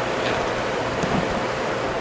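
Steady hiss of room noise in a pause between speakers.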